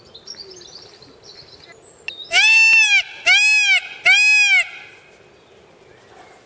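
Indian peacock (blue peafowl) giving three loud calls in quick succession a little over two seconds in, each about half a second long, rising and falling in pitch. Faint chirps of a small bird come before them, in the first second.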